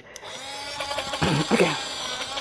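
Small handheld portable blender switching on and running steadily, its blades grinding dry rolled oats into a fine powder.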